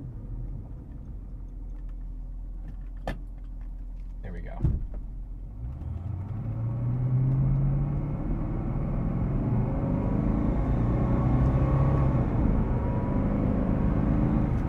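A 1973 Mercedes-Benz 450SEL's 4.5-litre fuel-injected V8, heard from inside the cabin, idles low with a single click about three seconds in. About six seconds in it pulls away under full throttle, its pitch rising. Around eight seconds in the pitch drops back as the three-speed automatic upshifts early, at about 4,000 rpm, then the engine climbs again, louder.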